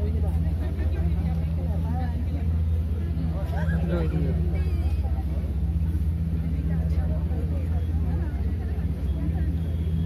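A boat's engine running with a steady low drone, with people chattering indistinctly in the background.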